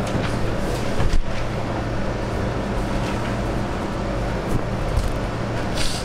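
Steady classroom room noise: a low electrical hum under an even hiss, with a few faint clicks, one about a second in and a couple near the end.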